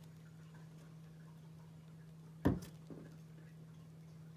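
A sponge scrubber handled over a bowl of suds in a sink: one sharp tap about two and a half seconds in, with a fainter tap just after, over a steady low hum.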